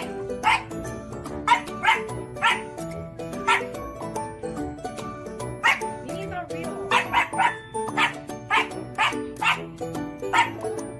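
French bulldog puppy barking over and over in short, sharp barks, one or two a second, with background music playing under it.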